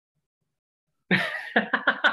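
A man bursting out laughing about a second in, a sharp breathy onset followed by a quick run of short ha-ha pulses.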